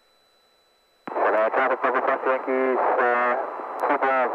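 Near silence, then about a second in a voice cuts in abruptly over the aircraft radio, a pilot's position call on the area traffic frequency, thin and band-limited as radio speech is.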